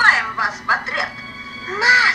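Russian-language film dialogue: high-pitched, child-like cartoon character voices speaking short phrases, with a steady low hum under them.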